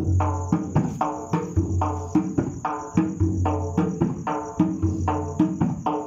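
Dhol, a large double-headed barrel drum, beaten in a steady rhythm: deep booming strokes alternate with ringing higher strokes, about two to three a second. Crickets chirr steadily behind it.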